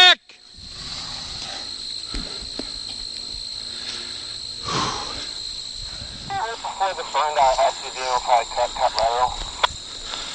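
Steady, high-pitched trilling of insects in a late-summer field. About six seconds in, a few seconds of indistinct speech.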